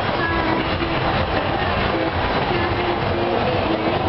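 Carousel running in a busy mall: a loud, steady noise with short held tones coming and going through it.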